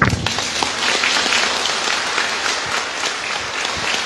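A congregation applauding: many hands clapping in a dense, steady patter that starts abruptly and holds level throughout.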